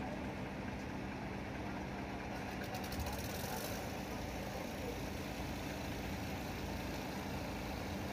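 An engine running steadily at idle, a constant hum over a noisy background, with faint voices.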